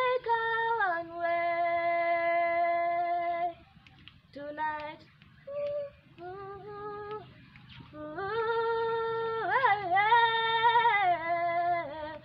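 A girl singing unaccompanied in long drawn-out notes: one note held for about three and a half seconds, a few short phrases, then a second long held note with a wavering run in its middle.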